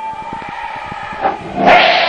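Concert-hall sound picked up by a handheld camera in the audience: low knocks and rumble of the camera being moved, then a sudden loud swell of crowd noise and music about one and a half seconds in.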